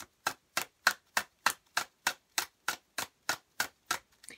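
A deck of tarot cards being shuffled overhand, each packet of cards slapping down onto the deck with a sharp click about three times a second in an even rhythm.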